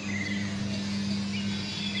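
A steady low hum, with a few short bird chirps above it.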